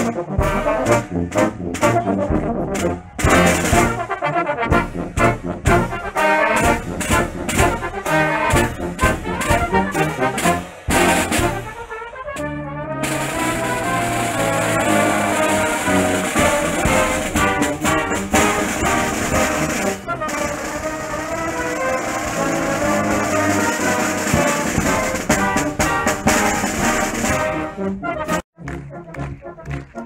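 Brass band with drum kit playing live. For the first twelve seconds or so the brass plays over regular drum and cymbal strokes. After a brief break the band moves into longer held brass chords.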